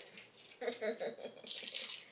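Candy wrapper being torn open by hand, a short crinkling tear near the end, after a soft murmur of voice.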